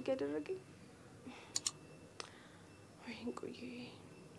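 A woman's voice: the end of a spoken line, then a quiet stretch with a few faint clicks, then a short, soft, breathy utterance near the end.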